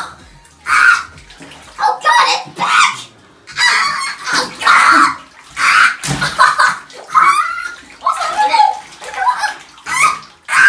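A child's laughing and wordless vocal sounds in short repeated bursts, over the water and water balloons shifting and splashing in a bathtub as he moves among them.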